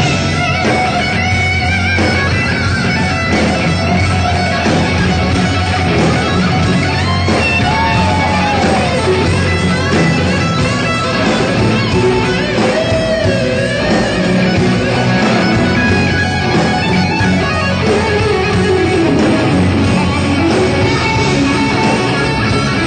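Live electric blues-rock band in F sharp, with a distorted lead electric guitar playing a solo full of string bends over rhythm guitar, bass guitar and a drum kit.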